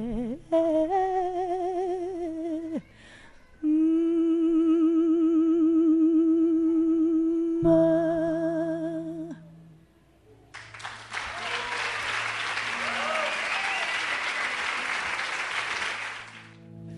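A woman sings the last long, held notes of a song without words, with vibrato, over a few low classical-guitar notes. The voice stops about nine seconds in, and after a short silence the audience applauds to the end, marking the end of the song.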